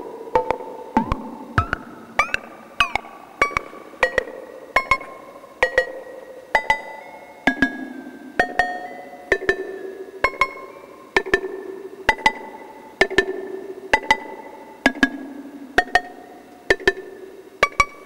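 Eurorack modular synthesizer patch, voiced through an Abstract Data Wave Boss VCA, playing a sequence of short percussive notes at shifting pitches, each struck sharply and dying away, roughly one every half second to second. The notes run through a spring reverb.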